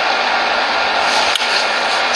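Steady hiss of background noise with no voice, broken by one short click a little past the middle.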